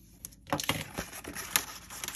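White card stock being creased by hand along its score lines, giving quick, irregular crackles and clicks that start about half a second in.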